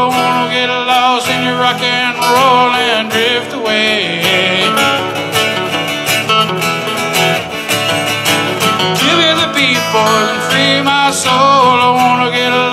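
Two acoustic guitars played together, strummed and picked in a steady soft-rock rhythm.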